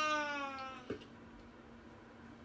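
A baby's single long, drawn-out vocal call that slides slowly down in pitch and stops about a second in, followed by a short click.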